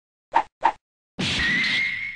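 Animated logo-intro sound effects: two quick pops, then a whoosh with a steady high ringing tone that starts fading out near the end.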